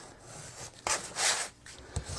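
Scissors rubbing along the fold of a sheet of heavyweight, gessoed watercolour paper to flatten the crease: a short scrape, then a longer, louder one about a second in.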